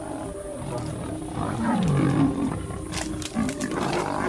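Big cats growling and snarling in a fight between lionesses and a leopard, getting louder to a peak about halfway through.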